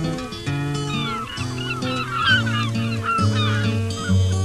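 Acoustic guitar theme music, with a flock of waterbirds calling over it from about a second in: many short, overlapping calls that fade out near the end.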